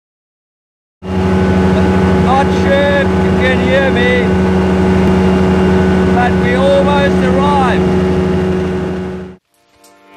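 Light aircraft engine running steadily as heard in a Bushbaby's cockpit, with a voice talking over it twice. The engine sound starts about a second in and cuts off suddenly near the end.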